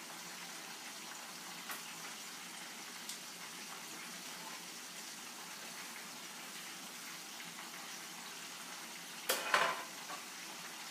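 Catfish frying in oil in a lidded skillet, a steady, even sizzle. Near the end there is a brief clatter of two knocks.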